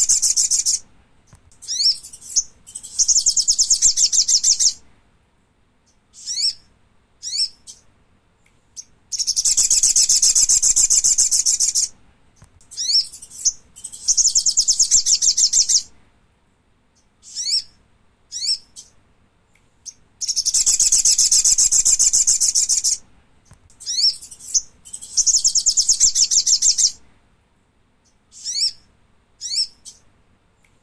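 Thick-billed spiderhunter calls: long, rapid, high trills of two to three seconds each, alternating with short, sharp, downslurred notes. The same sequence repeats about every eleven seconds.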